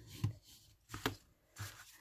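A bone folder creasing a fold in cardstock: faint rubbing with a few short, sharp taps and paper sounds.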